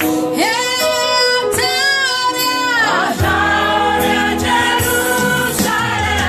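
Gospel music: voices singing long held notes that glide between pitches, over a steady bass and a beat.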